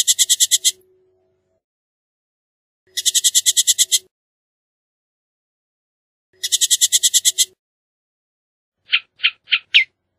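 Bullock's oriole giving its dry chatter call: three rattling bursts of rapid notes, about ten a second, each lasting about a second and spaced a few seconds apart. Four short, separate notes follow near the end.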